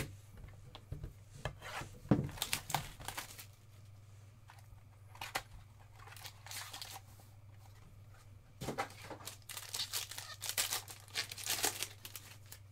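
Trading card pack being opened by hand: a small cardboard pack box handled and opened, then its foil wrapper torn and crinkled in several bursts, the longest near the end. A low steady hum runs underneath.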